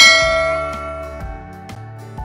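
A bright bell-like ding from a subscribe-button animation, struck once and ringing out, fading over about a second. Soft background guitar music runs underneath.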